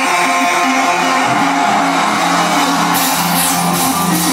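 Live heavy metal band playing loudly: a distorted electric guitar riff with drums, with cymbals crashing in about three seconds in.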